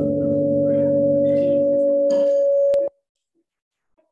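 A steady held tone, two pitches an octave apart, sounding at an even level with no decay, then cut off suddenly with a click about three seconds in, leaving silence as the broadcast audio drops out before being restarted.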